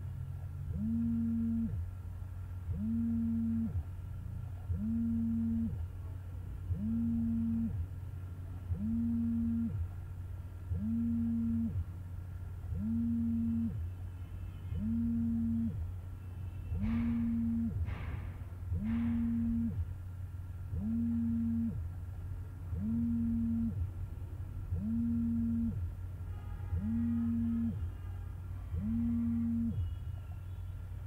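A low tone that sounds for about a second every two seconds in a strict, even rhythm, over a steady low hum. Two short hissing sweeps come a little past halfway.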